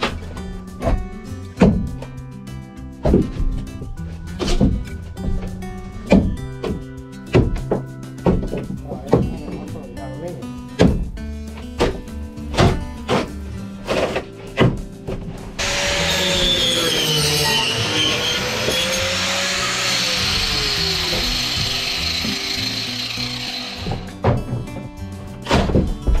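Steel crowbar knocking and prying at the old wooden stringers of a fibreglass boat hull, a sharp knock about every second, over background music. About two-thirds of the way through, an angle grinder fitted with a multi-cutter wood blade starts cutting the stringer. It runs as a steady, loud whine whose pitch sags and recovers under load, then drops near the end.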